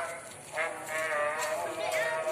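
A livestock animal bleating: one long, held call that starts about half a second in.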